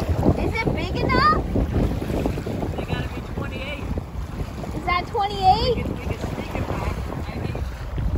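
Wind buffeting the microphone in a steady low rumble, with a person's voice calling out briefly twice, about a second in and again about five seconds in.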